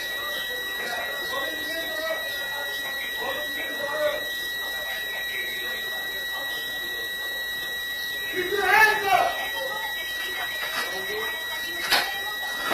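A steady, high-pitched electronic alarm tone sounding without a break. A voice calls out briefly about two thirds of the way through.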